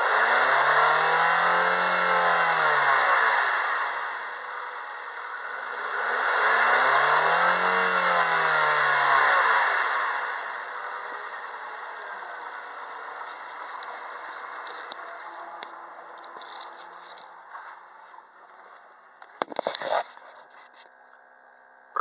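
2006 Mazda 3's 1.6-litre petrol four-cylinder engine revved twice from idle, each rev climbing and falling back over about four seconds. It then idles, growing fainter, with a few sharp clicks near the end.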